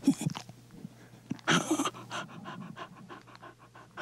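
A dog panting in quick, short breaths, several a second, with one louder breath about one and a half seconds in. This is a sound effect in a quiet break of a studio rock recording.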